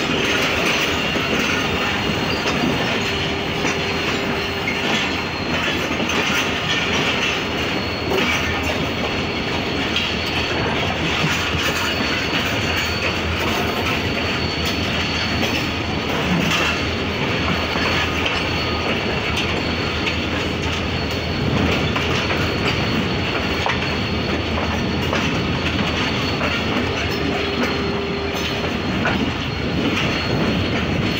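Mehran Express passenger coaches running at speed, heard from an open coach window: a steady loud rumble and clatter of wheels on the track, with a faint high whine throughout.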